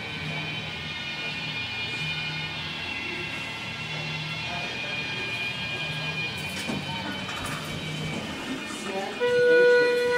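Steady background hum of the store and elevator lobby, then about nine seconds in a loud, steady electronic beep lasting about a second, the Schindler 330A elevator's signal tone.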